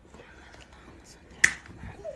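Ear-piercing gun firing once with a single sharp click about a second and a half in, as it drives the stud through a newborn's earlobe.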